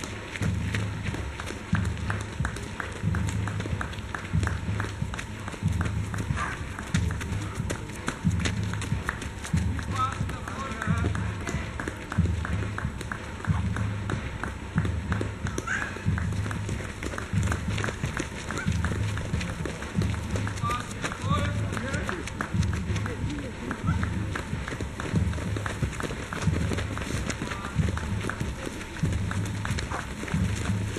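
Footsteps of runners on a dirt trail: a continuous patter of feet as runners pass close by, thickening as a group arrives. Under it runs a regular low pulse about once a second.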